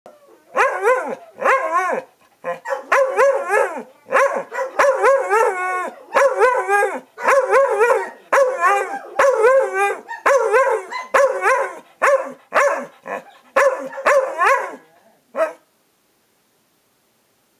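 A dog making a long run of about twenty short, wavering vocal calls, its pitch sliding up and down within each, in quick succession with brief gaps: the back-and-forth grumbling 'talk' of a dog arguing.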